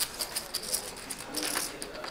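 Clay poker chips clicking lightly as players handle and riffle them at the table, a quick continuous patter of small clicks, with faint voices in the background.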